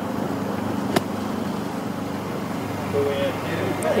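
A golf wedge strikes the sand on a greenside bunker shot: one sharp, short impact about a second in, over a steady outdoor background hum.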